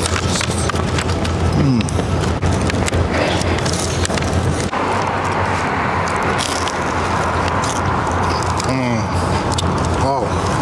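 Steady street traffic noise with a constant low hum, over which a man bites and chews a crisp pizza slice, with small crunching clicks. Twice, about two seconds in and near the end, there is a short murmur.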